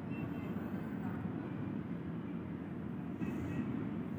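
Steady low background rumble with no speech, fairly quiet and unchanging throughout.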